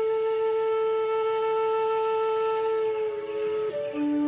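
Background music: one long held note that gives way to a slow stepping melody near the end.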